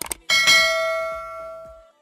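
Subscribe-button animation sound effect: two quick mouse clicks, then a single bright bell chime that rings out and fades for about a second and a half before cutting off.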